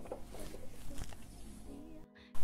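Faint, scattered light taps as chopped onion pieces are swept by hand off a wooden cutting board into a metal oven tray.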